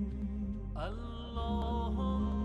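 Slow devotional music over a steady low drone; just under a second in a new melodic line slides upward and settles into a held note.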